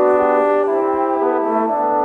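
Brass quintet of two trumpets, French horn, trombone and bass trombone playing held chords together, the harmony shifting every half second or so.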